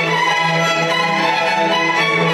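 Violin playing a melody of long bowed notes, over a steady lower note held beneath it by the accompaniment.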